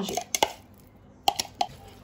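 A few sharp clicks and knocks from a metal spoon striking a ceramic bowl as a soft filling is stirred.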